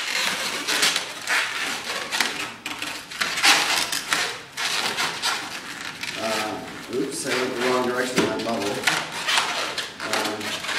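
Latex twisting balloons rubbing and squeaking against each other as a long balloon is twisted and wrapped around other bubbles, with two longer pitched squeaks about six and seven seconds in.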